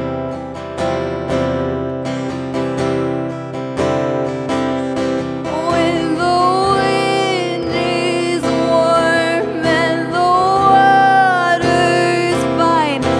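Acoustic guitar strummed steadily in a live solo performance, with a woman's voice coming in about halfway through, singing long held notes over the strumming.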